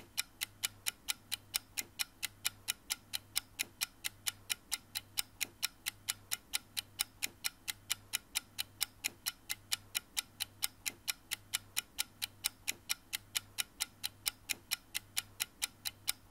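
Rapid, even ticking like a clock, about four ticks a second, over a faint low hum that pulses on and off.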